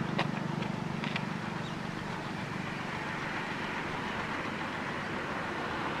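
Petrol poured from a measuring cup through a funnel into a Hero Glamour motorcycle's fuel tank, a steady faint trickle. Under it is a low engine hum that fades after about two seconds.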